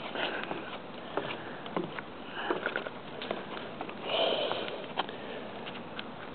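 Grass and brush fire burning, crackling with scattered sharp pops over a steady rushing hiss, with a louder rushing surge about four seconds in.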